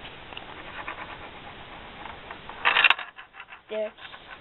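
Perplexus Rookie maze sphere being tilted in the hands, its ball rolling and ticking faintly along the plastic tracks, with a short, louder rattle near the end.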